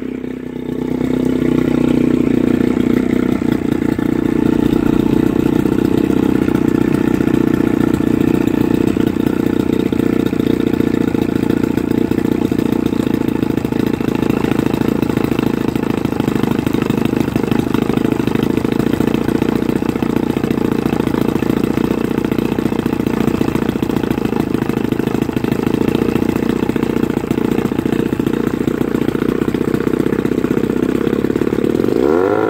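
Johnson 9.9 hp Sea-Horse two-stroke twin outboard motor running just after starting, picking up about a second in and then holding a steady idle. It is running out of the water on a stand, cooled by a garden hose at the lower unit.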